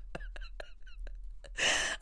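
A woman's quiet, breathy laughter trailing off in a run of short pulses, then a sharp intake of breath near the end.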